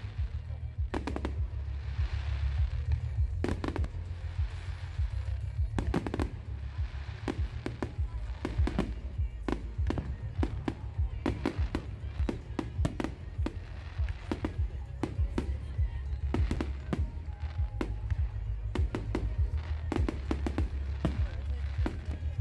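Fireworks display: an irregular, rapid string of bangs and pops from bursting shells, several a second at times, over a steady low rumble.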